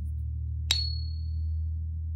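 A one-troy-ounce .9999 fine silver buffalo round, held in a Pocket Pinger, is tapped once with a wooden dowel about two-thirds of a second in. It gives a single high, clear ping that dies away after about a second, over a steady low hum. The short ring is typical of nearly pure silver.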